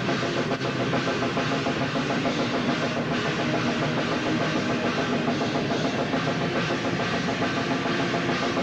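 Black/death metal band playing live, with the drum kit loudest and distorted guitars and bass underneath. The drummer plays the kit without a break.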